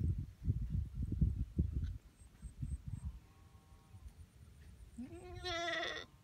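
Goat bleating: a loud, wavering bleat about five seconds in, after a faint shorter call about three seconds in. Low rumbling noise fills the first two seconds.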